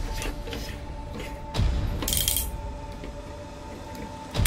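Parts of a Weijiang SS38 Optimus Prime transforming figure clicking and knocking as they are moved by hand, with a thud about a second and a half in and a short scrape about two seconds in. Quiet background music with held notes runs underneath.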